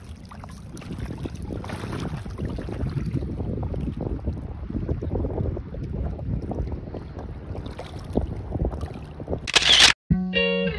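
Wind buffeting the microphone beside flowing river water, an uneven rumbling hiss throughout. Just before the end, a brief loud burst of hiss cuts in.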